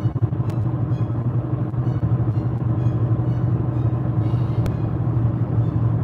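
Steady road and engine noise inside a moving car's cabin: a low, even hum.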